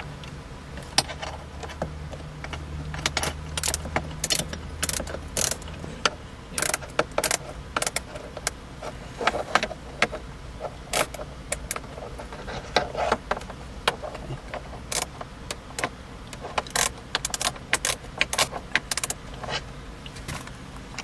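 Irregular metallic clicks and clinks of a hand tool and bolts as the bolts holding a car's dashboard trim panel are worked loose and taken out.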